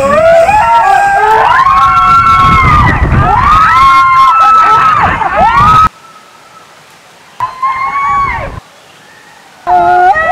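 People screaming on a water slide: long held, wavering cries that rise and fall, over rushing water. About six seconds in the sound cuts off abruptly to something much quieter with one shorter scream, and loud screaming starts again near the end.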